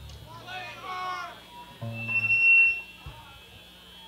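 Stage noise from a live punk band between songs: a brief voice early on, a short low note from the rig about two seconds in, and right after it a single loud, piercing high tone that lasts about half a second.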